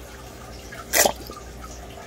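A single short watery drip from a turkey baster at the aquarium's water surface about a second in, as it is used to suck up planaria.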